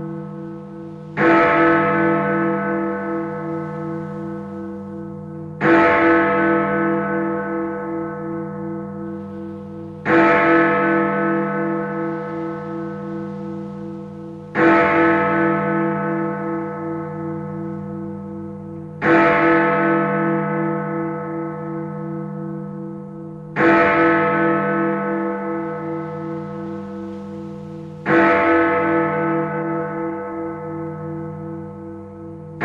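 A single large bell tolling at a slow, even pace: seven strokes about four and a half seconds apart, each ringing on and fading before the next, over a steady wavering hum.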